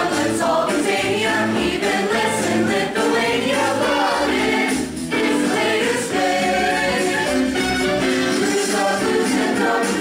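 A show choir singing together, many voices in full song with musical accompaniment. The music dips briefly about five seconds in.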